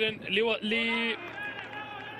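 A male football commentator speaking in Arabic, holding one drawn-out vowel for about half a second, then trailing off more quietly.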